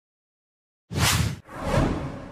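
Silence, then about a second in a whoosh sound effect of an animated logo intro, cut off sharply and followed by a second whoosh that swells and fades.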